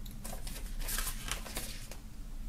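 Pages of a paper CD booklet being turned and handled, a run of short rustles and soft paper flicks.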